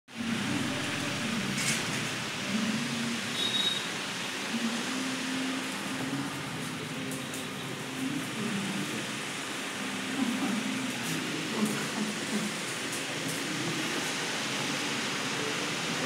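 Muffled voices talking in the background over a steady hiss, with a short high-pitched squeak about three and a half seconds in.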